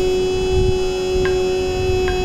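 Recorded Carnatic singing holding one long steady note over a drone, the held end of a sung phrase, with a light stroke about a second in.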